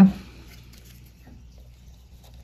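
Faint soft rustling with a few light scratches: a clear plastic straw being handled and slid over a tarpon fly's bucktail hair at the vise, to push the hair back.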